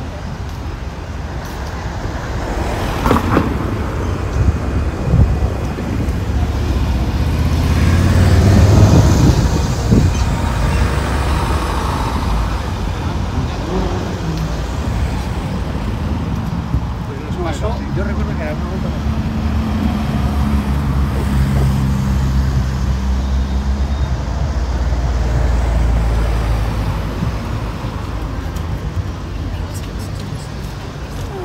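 City road traffic: cars driving past close by, the loudest pass about eight to ten seconds in, then a vehicle's engine running with a steady low hum through much of the second half.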